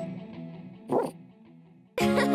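The last notes of a children's song ringing out and fading, then a single short bark from a cartoon puppy about a second in.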